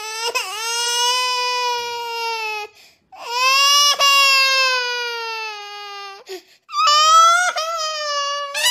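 Exaggerated cartoon crying: three long, high-pitched wails, each two to three seconds long with short breaks between, the middle one sliding slowly lower in pitch.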